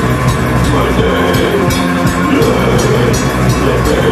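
Raw hardcore punk band playing: heavily distorted guitar and bass over drums, with a cymbal struck several times a second.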